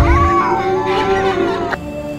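A cat's yowl sound effect that wavers up and down in pitch, over a steady eerie music drone; the sound drops away sharply near the end.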